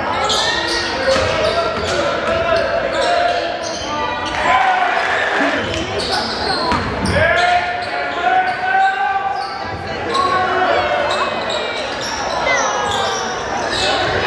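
Live basketball game in a gymnasium: the ball bouncing on the hardwood court and sneakers squeaking, over players' and spectators' voices calling out, all echoing in the hall.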